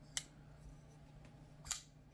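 Two sharp clicks about a second and a half apart from a titanium-handled, steel-liner-lock folding knife, the Divo Knives / Blue Creek Knives Mash, as its blade is worked.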